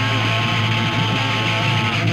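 Punk rock song with electric guitar, a held note slowly sliding down in pitch.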